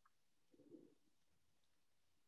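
Near silence: room tone over a video call, with one faint, brief low sound a little over half a second in.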